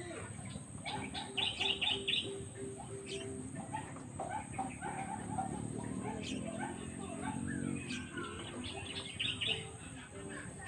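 Several birds chirping and calling, with quick runs of high notes, gliding calls and a low note repeated several times a second, over a steady high-pitched tone.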